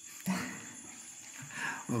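A pause between a man's chanted or spoken Thai/Pali phrases. It holds a short sound about a quarter second in and a faint murmur of voices over a steady high drone of night insects. The next phrase begins just before the end.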